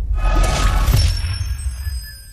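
Logo intro sound effect: a crashing burst with a deep low end, like breaking glass, then high ringing tones that fade out.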